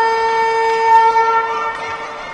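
Ice rink horn sounding one long, steady, loud blast that cuts off near the end.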